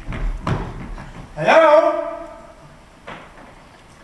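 Actor's footfalls thudding on a stage floor as he leaps. About a second and a half in comes a loud cry that rises in pitch and holds briefly, and a single knock follows about three seconds in.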